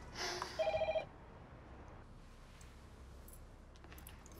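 Door-entry intercom buzzer sounding as its call button is pressed: a brief pulsing electronic ring, about half a second long, just under a second in.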